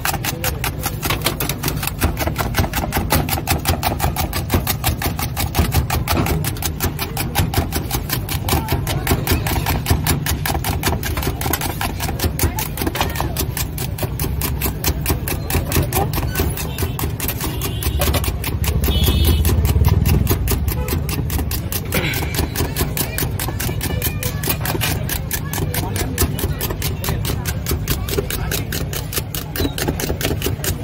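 Egg mixture being beaten by hand in a steel bowl: fast, even strokes, several a second, whipping the eggs to a froth for a fluffy omelette.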